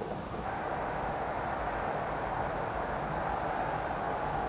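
Steady murmur of a large football stadium crowd, with no single sound standing out, rising a little about half a second in.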